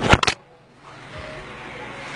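A few loud knocks and rubs from a handheld phone being moved and repositioned, in the first half-second, then quiet room tone.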